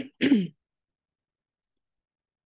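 A person briefly clearing their throat once, a short rasp just after the start.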